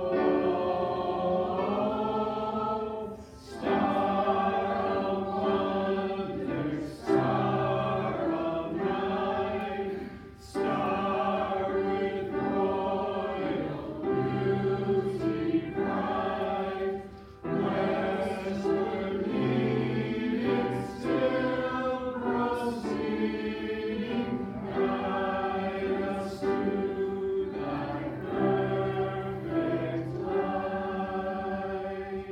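Congregation singing a hymn together in sustained lines, with short breaks between phrases every few seconds.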